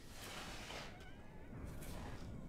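A faint, breathy, high-pitched whimper whose pitch wavers, a mewling cry from an infected person.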